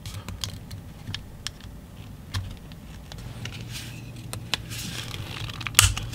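Screwdriver prying apart the snap-fit seam of a plastic power bank case: scattered sharp plastic clicks and short scrapes as the shell is worked loose, with a louder click near the end.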